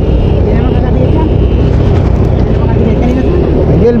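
Loud, steady low rumble of wind buffeting the microphone of a camera moving at race speed.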